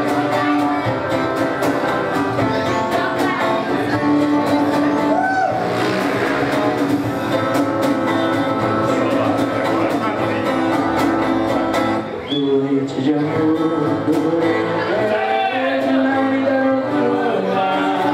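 Live acoustic guitar strummed, with a male voice singing into a microphone through a PA.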